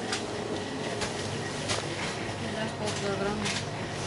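Inside a small shop: low, indistinct voices, several short sharp handling noises, and a steady low hum underneath.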